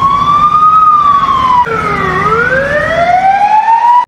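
Police siren wailing in a slow rise and fall. About halfway through the pitch drops low, then climbs steadily back up.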